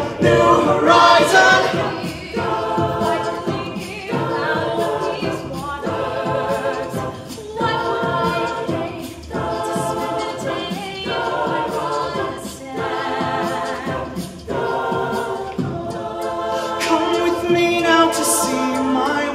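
A mixed-voice a cappella group singing without recognisable words, held chords changing about every second and a half, over short crisp vocal-percussion ticks.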